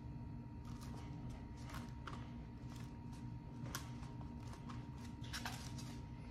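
Faint, scattered clicks and light taps from hands pressing a sign board down onto a glued backing on a cutting mat, a few of them bunched near the end, over a steady low hum.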